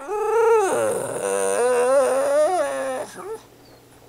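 A pug whining for a treat: one long, wavering, pitched whine lasting about three seconds, then a brief short one just after.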